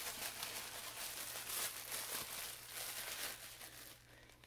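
A clear plastic bag crinkling and rustling steadily as hands rummage in it, pulling out paper yarn ball bands.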